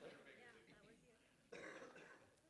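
Near silence of a hushed room, broken about a second and a half in by a person briefly clearing their throat.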